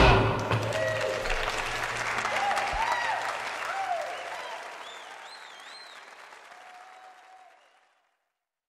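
Audience applause with a few scattered cheers, right after a worship song's last chord. The applause fades away over about seven seconds.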